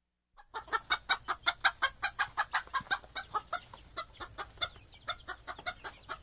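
A chicken clucking in a rapid run of short clucks, about six a second, starting suddenly about half a second in and growing fainter after the first few seconds.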